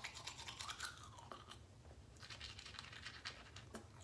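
Faint scrubbing of a manual toothbrush on teeth: quick back-and-forth strokes in two spells with a short pause between.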